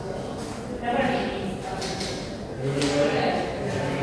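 Indistinct speech, a voice talking quietly in a large, echoing hall, with no clear words.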